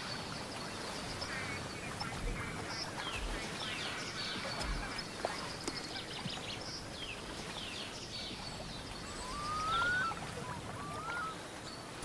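Waterbirds calling: many short, high, falling calls throughout, with a few longer rising calls about nine to eleven seconds in, over a steady faint hiss of open-air ambience.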